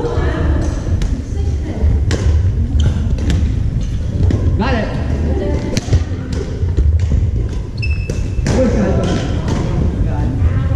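Badminton rackets hitting a shuttlecock in a rally: sharp pops at irregular intervals, one loud hit about six seconds in, echoing in a large gymnasium over a steady low rumble of the hall.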